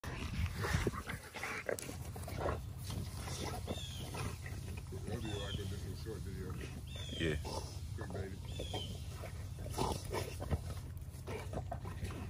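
Two male American bully dogs growling while they fight, with rough, irregular snarls and a few short high calls through the scuffle.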